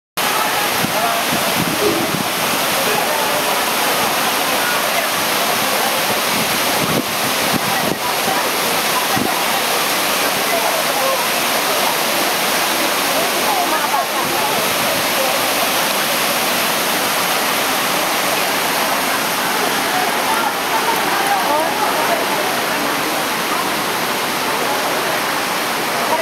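Wide waterfall pouring over a low wall into shallow running water, a steady, loud rush with no pause.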